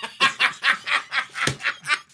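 Men laughing: a run of quick, breathy laugh bursts, about four or five a second.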